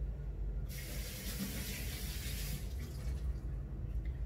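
Tap water running for about two seconds as hands are washed under it, starting under a second in and shutting off abruptly.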